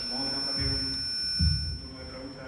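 A voice speaking through a microphone in a large hall, with a steady high-pitched whine over most of it. Two low thumps sound partway through, the louder one about a second and a half in.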